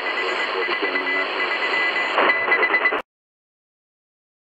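Tecsun portable shortwave radio receiving a signal near 6000 kHz: noisy, hissy reception with a high Morse code tone beeping on and off. It cuts off abruptly about three seconds in.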